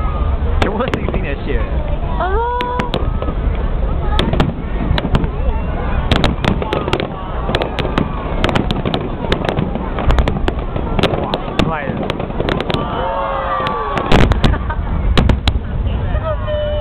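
Aerial fireworks shells bursting in a string of sharp bangs and crackles, coming thicker in the second half with the loudest volley near the end, with people's voices underneath.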